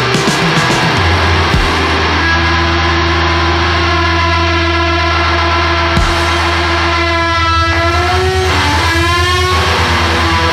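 Heavy psychedelic blues-rock band music: a long held lead note rings over a steady low bass note, then bends and wavers in pitch near the end.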